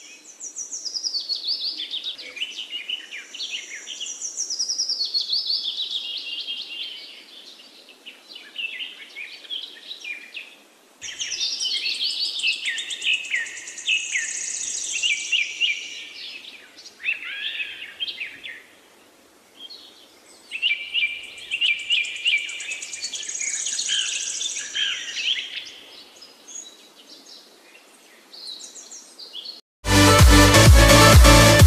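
A chorus of several birds singing, with dense, quick chirps and trills. The singing comes in three long spells with brief lulls between them, each new spell starting abruptly.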